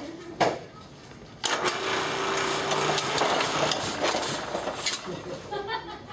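Hand-fed platen letterpress running through an impression: a sharp click, then about three and a half seconds of mechanical clatter over a steady hum, stopping near the end. It is a test impression debossing a card with an added sheet of 220 stock as packing.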